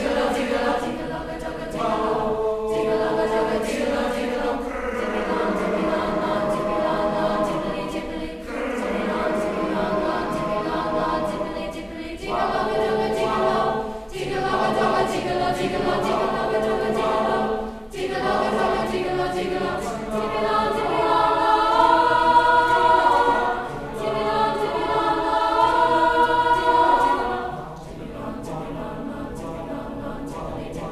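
Mixed-voice youth choir singing in phrases a few seconds long with short breaks between them; it swells loudest with bright high voices past the two-thirds mark, then drops softer near the end.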